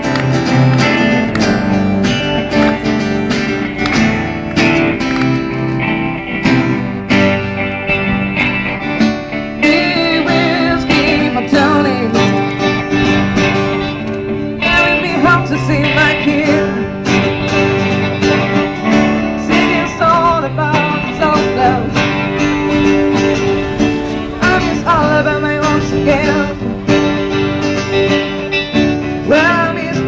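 A small band playing live: electric and acoustic guitars, with a woman's voice singing into the microphone from about ten seconds in.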